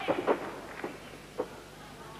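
Sharp knocks and slaps from a wrestling bout, several close together at the start and single ones later, about a second and a half in. A steady low hum from the old broadcast recording runs underneath.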